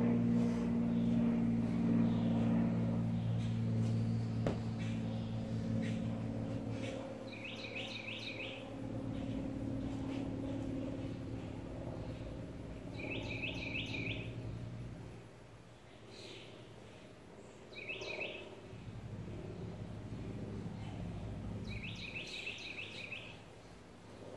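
A songbird calling in short runs of three or four quick chirps, repeated four times, over a steady low hum that fades out about two-thirds of the way through.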